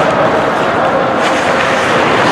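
Steady ice-rink ambience during a hockey game: an even rush of noise with a faint steady hum under it, and a few light skate scrapes about a second in.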